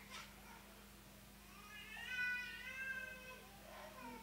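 A faint, high-pitched, drawn-out call lasting about two seconds, starting a little before the middle, with a slight rise and fall in pitch.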